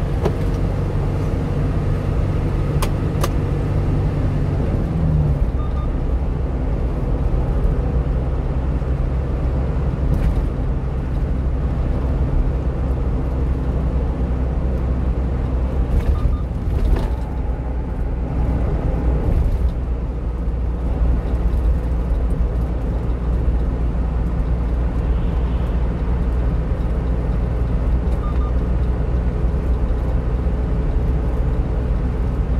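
A one-ton truck driving at highway speed, heard from the cab: a steady engine drone with continuous tyre and road rumble. The engine note changes about five seconds in.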